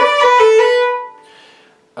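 Fiddle playing a slowed-down roll ornament on the note B: a first-finger B with quick grace notes from the third finger and the open A string, bowed as one long note. The note stops about a second in and fades away.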